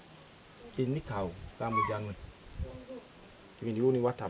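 A man's voice speaking in short phrases, with faint high chirps in the background.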